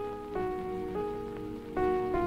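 Background music: a slow melody of held notes, moving to a new pitch roughly every half second.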